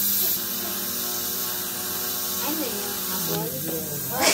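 A steady hum made of several held tones, with faint snatches of a voice near the end.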